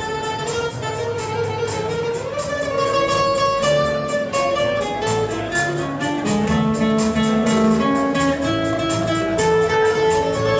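Live band playing an instrumental break with no singing, an acoustic guitar playing the melody over a steady beat.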